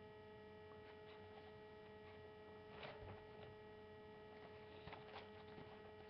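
Near silence: a steady electrical hum, with a few faint clicks about three seconds in and again near the end.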